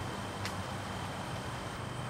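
Steady low background rumble with a faint, thin high tone running through it, and one faint tick about half a second in.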